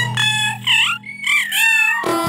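Effect-warped children's cartoon intro audio: high warbling, swooping pitched tones with a short break about a second in and a falling glide near the end.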